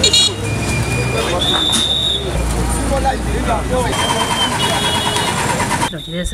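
Busy street commotion: a crowd of people talking and shouting over traffic, with vehicle engines running. Several held high-pitched tones sound over it, and the low engine rumble grows stronger about halfway through.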